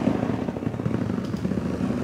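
Inflatable rubber birthing ball rolling and rubbing under a seated person's circling hips, giving a loud, rapid fluttering rumble.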